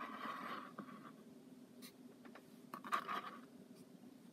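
Faint scraping of a ceramic coffee mug being turned on a textured mat, with a few light clicks. A second short scrape comes about three seconds in.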